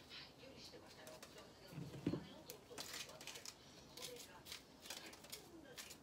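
Faint crackles and small snaps of fingers tearing green peppers apart and pulling out the seeds and stems, with one soft thump about two seconds in.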